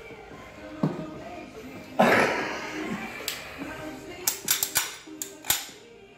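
Sharp metallic clicks from a powder-actuated nail gun that fires .22 shells being worked by hand, a quick run of them in the second half, as a spent shell that the worn tool won't eject is cleared. A sudden loud sound about two seconds in, over background music.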